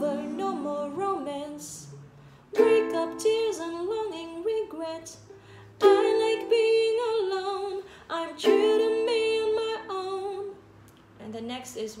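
A woman singing to her own ukulele strumming, working through the bridge chords G, A minor, E minor and A minor, with a new chord struck about every three seconds. The playing fades out near the end.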